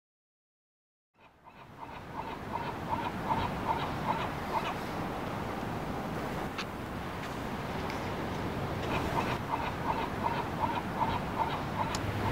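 A bird calling in fast runs of short, evenly repeated notes, about three or four a second, over a steady hiss. It fades in after about a second of silence.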